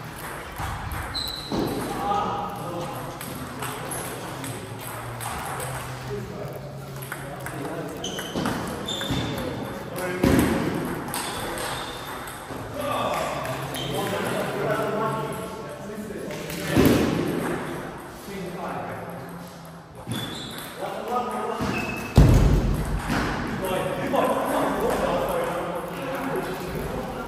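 Indistinct voices echoing in a large sports hall, with a few short high pings typical of table tennis balls and three louder knocks about 10, 17 and 22 seconds in.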